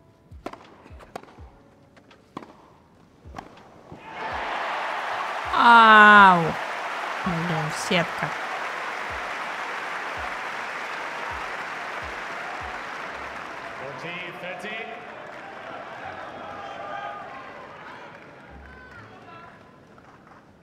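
Tennis rally on a grass court: a run of sharp racket-on-ball strikes, then the crowd bursts into applause and cheering as the point ends. A spectator's loud shout rises and falls about six seconds in, another follows shortly after, and the applause fades away over the following ten seconds or so.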